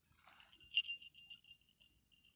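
A small bell tinkling faintly: one clear high note, struck brightly a little under a second in, then ringing on in quick small repeated tinkles that slowly fade.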